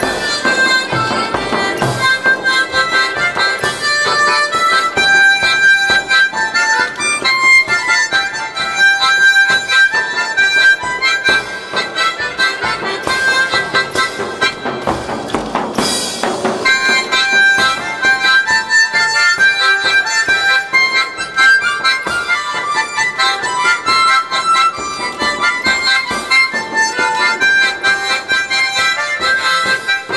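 A diatonic harmonica in C played through a microphone and PA, carrying a melody over a recorded backing track with a steady beat.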